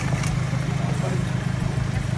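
A vehicle engine idling with a steady low rumble, with faint voices over it.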